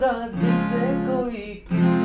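Fender acoustic guitar, capoed at the first fret, strummed through a chord change from D to E minor, with fresh strums about half a second and 1.7 seconds in.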